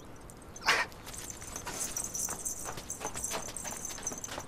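A short sharp sound less than a second in, then a steady high-pitched buzz with scattered soft ticks and taps.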